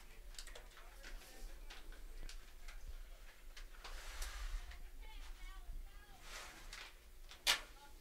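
Faint open ballfield sound: a steady low wind rumble on the microphone, distant voices and scattered small clicks, with one sharper knock about seven and a half seconds in.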